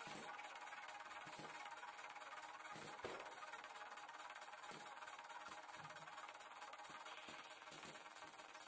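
Faint background music over steady hiss, with soft dull thumps of kicks landing on a heavy punching bag about every second and a half, one a little sharper about three seconds in.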